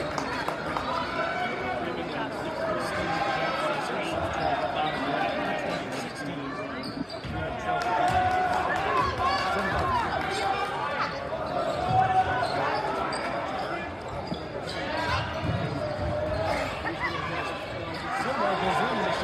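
Basketball dribbling on a hardwood gym floor, under the steady chatter of a crowd of spectators.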